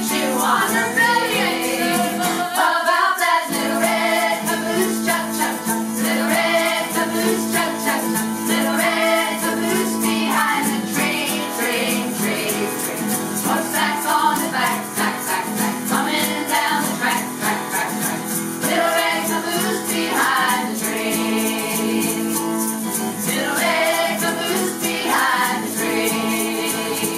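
A group of adult voices singing a children's song in unison, accompanied by a strummed acoustic guitar and egg shakers keeping a steady beat.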